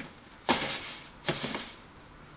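Rustling of shredded crinkle-paper filling inside a cardboard box as a hand rummages through it, in two short bursts about a second apart.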